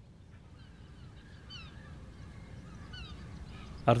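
Outdoor ambience fading in: a low steady rumble with faint bird calls, a few short falling chirps about a second and a half in and again near three seconds.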